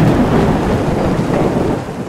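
Thunder sound effect: a sharp crack at the start, then a loud, continuous rumble.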